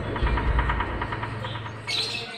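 Rapid, evenly spaced high chirping, about ten pulses a second, fading out about a second and a half in, over a low steady hum.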